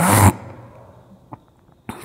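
A man's single short cough, followed by a couple of faint clicks.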